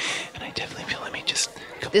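A man whispering ASMR-style close to the microphone, a breathy whisper with almost no voiced tone.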